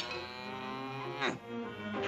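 Cartoon soundtrack: a sharp click, then a held low note over the orchestral score, and a quick downward pitch glide about a second and a quarter in.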